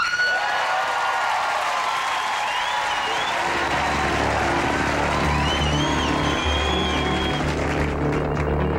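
Studio audience applauding over the opening of a live rock band, with sustained instrument tones above the clapping. An electric bass comes in with low notes about three and a half seconds in.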